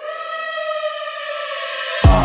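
A single sustained siren-like tone with its overtones, bending gently in pitch, heard alone in a break of a G-house track where the bass and drums have dropped out.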